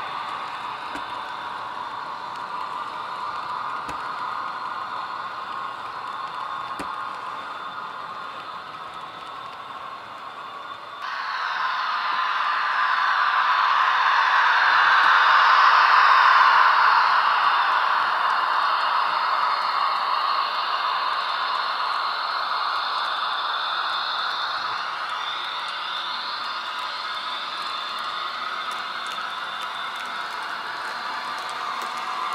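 HO-scale model of an SBB Ae 6/6 electric locomotive and its coaches running on a layout's track, with a steady mechanical running noise. About eleven seconds in the sound changes abruptly and grows louder as the locomotive passes close, peaking some five seconds later and then slowly fading.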